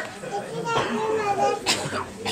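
Young children's voices and talk with overlapping chatter, and a brief sharp noise near the end.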